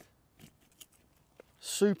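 Folding camp stool being snapped open and set down: a sharp click at the start, then a few faint clicks, with a man's voice starting near the end.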